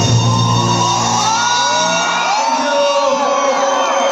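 Live band and amplified voice at a concert: the bass stops about halfway through as the song ends, while voices slide up and down in pitch over the fading music, with shouts and whoops from the crowd.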